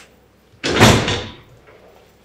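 A door shutting once with a heavy thud about half a second in, dying away over a moment.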